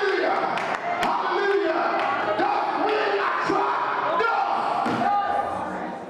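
A man speaking emphatically into a microphone over a hall's sound system.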